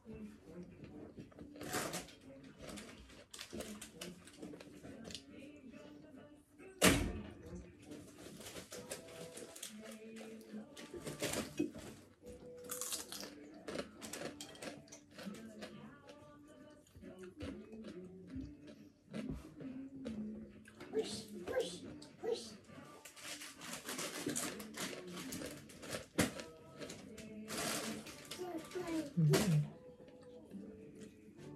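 Close-up eating sounds: chewing and mouth noises with scattered clicks of fingers and a spoon against plates, and one sharp knock about seven seconds in. Faint voices murmur underneath.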